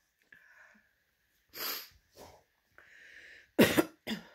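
A woman crying: short sniffs and catches of breath, then a louder cough-like sob near the end.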